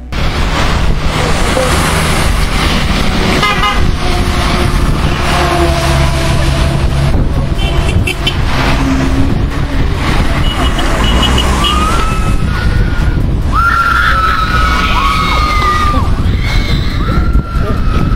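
City street traffic with car horns honking several times and people shouting, over a loud, steady rumble.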